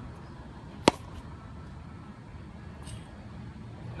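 A single sharp crack about a second in: a tennis racket's frame striking a ball lying on a hard court, catching it from the outside and underneath to flick it up off the ground. A steady low background hum lies beneath.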